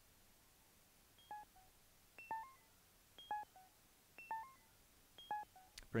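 A Noise Engineering Manis Iteritas eurorack oscillator voice, shaped by a high-pass filter and envelope, plays a sequenced pattern of short, bright, pitched blips. They come about once a second, each a quick higher note dropping to a lower one, and grow louder as the voice is brought up in the mixer.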